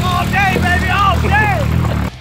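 A car engine running under a man's loud, whooping shouts, cutting off suddenly at the end.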